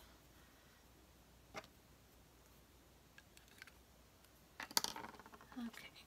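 Small handling sounds of craft materials on a work table: a single click, a few faint ticks, then a quick cluster of sharper clicks and rustling about five seconds in, as a pen and small pieces are handled and set down on the cutting mat. A short murmur of a voice follows near the end.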